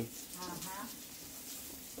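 Faint sizzling of patties frying in oil in a skillet on a gas stove, a steady soft hiss, with a faint voice briefly about half a second in.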